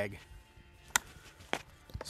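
Sharp clicks from an AK-pattern shotgun being handled during a magazine swap: one loud click about a second in, then two lighter ones.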